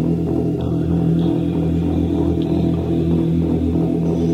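Instrumental passage of a gothic rock band's demo recording: bass and guitar holding a steady, low, droning chord over a faint regular beat.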